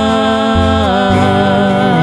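Acoustic guitar and upright double bass playing under a long held sung note, which slides down to a new pitch about a second in.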